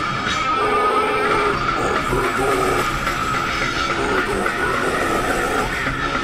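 Death metal song playing: a full band led by electric guitar, dense and continuous at a steady loud level.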